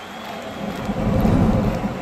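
A low, thunder-like rumble that swells to a peak a little past halfway and then fades, the tail of a heavy boom from an intro sound effect.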